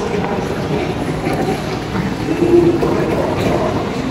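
Busy shopping-mall ambience: a steady hum of indistinct crowd chatter and background noise in a large, echoing hall.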